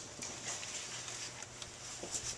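Faint handling noises as rubber heater hose and wiring are moved and fastened with zip ties: a few light, scattered clicks and rustles over a low steady hum.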